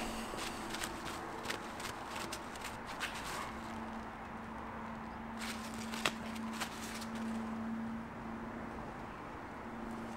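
Faint handling sounds as a slip-on plastic arrow vane is worked onto an arrow shaft by hand: a few light clicks and taps. A faint low hum runs through the middle few seconds.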